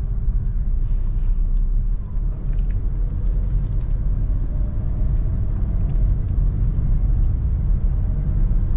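Honda Brio hatchback's small four-cylinder petrol engine and tyres heard from inside the cabin as a steady low rumble, the car driving slowly in a low gear on an asphalt road.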